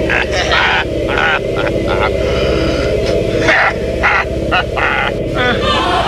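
A steady low hum or drone runs all through the film's soundtrack, with short irregular bursts of voice-like sound over it.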